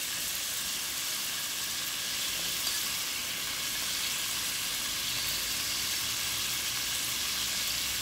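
Blended garlic and bandhania (culantro) frying in hot oil in a pot, giving a steady, even sizzle.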